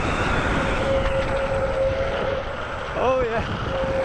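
Downhill longboard at speed: wind rushing over the rider's microphone and the wheels running on asphalt through a turn, with a steady hum for about two seconds in the middle.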